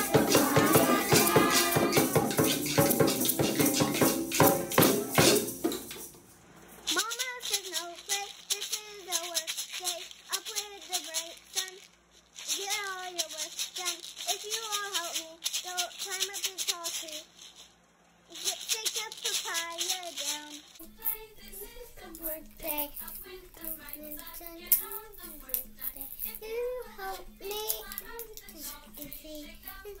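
Egg shakers shaken in a steady rhythm by a group of young children for about the first six seconds. After that a young child sings on her own.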